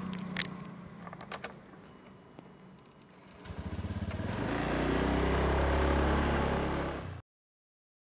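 A few light clicks, then a small motor scooter's engine starts about three and a half seconds in. Its quick pulses merge into a steady running note that grows louder, and the sound cuts off suddenly near the end.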